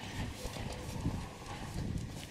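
Footsteps of people walking on brick paving, irregular hard taps over outdoor background noise.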